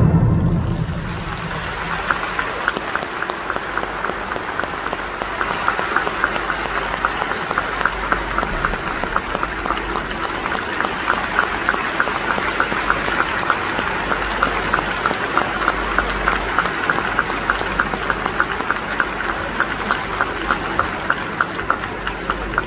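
Arena audience applauding as the music dies away; within a couple of seconds the clapping falls into a steady rhythm in unison, about two to three claps a second, over the general applause.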